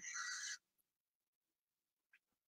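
Near silence: a faint breathy trailing-off of a woman's voice in the first half second, then the audio drops to complete silence.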